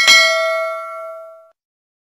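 Notification-bell sound effect from a subscribe-button animation: a single bright ding that rings and fades away over about a second and a half.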